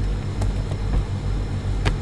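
Computer keyboard keystrokes, about three separate clicks, over a steady low background rumble.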